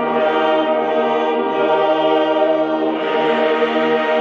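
Choir and congregation singing a hymn in long held chords, accompanied by a brass band with a low tuba-type horn. The chord changes about three seconds in.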